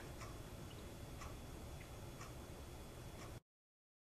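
Faint ticking about once a second over low room noise, cutting off suddenly to silence near the end.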